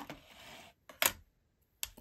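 Brief soft rustling, then two sharp clicks about three quarters of a second apart, from stamping supplies being handled on a craft desk.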